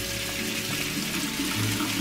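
Water from a kitchen faucet's pull-down sprayer running steadily onto rice in a stainless steel mesh strainer as the rice is rinsed. Soft music plays underneath.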